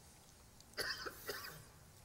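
A man coughing twice, two short coughs about half a second apart.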